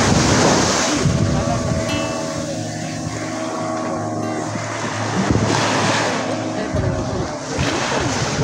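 Small waves washing onto a sandy shore, with wind buffeting the microphone; the wash swells about halfway through and again near the end.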